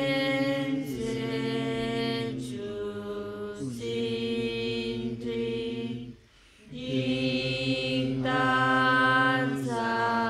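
Voices chanting a Buddhist prayer in long held tones that step from one pitch to the next, with a brief pause for breath about six seconds in.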